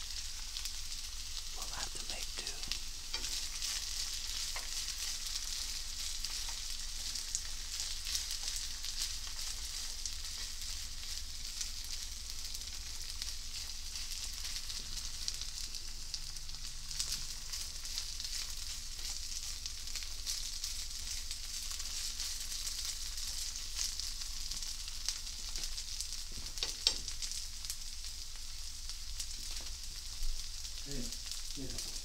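Food frying in butter in a skillet: a steady sizzle peppered with small pops and crackles, with one sharper click near the end.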